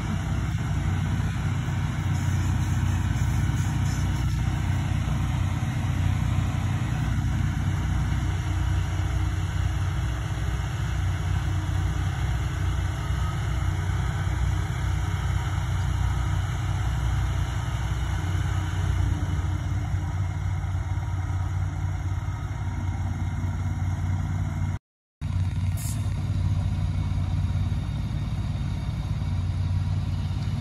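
An engine running steadily with a low drone, with no change in speed. The sound cuts out completely for a fraction of a second near the end.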